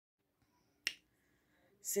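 A single sharp click just under a second in, followed by a woman starting to speak near the end.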